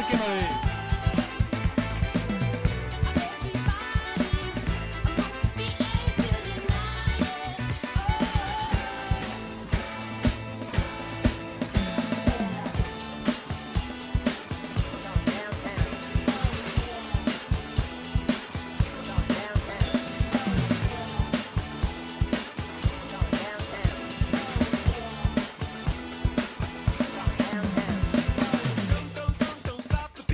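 Electronic drum kit played along to an upbeat dance-pop backing track: a steady, driving beat of kick, snare and cymbals over the song's bass and vocals.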